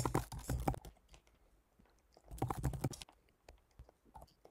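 Typing on a computer keyboard: quick runs of keystrokes in two bursts, one at the start and another about two seconds in.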